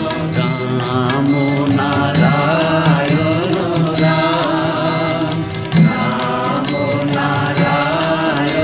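Bengali nam-sankirtan devotional music: a wavering melodic line over a rhythmic accompaniment, with a sharp accent about six seconds in.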